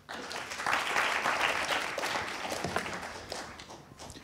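Audience applauding, starting at once, strongest over the first two seconds and fading away toward the end.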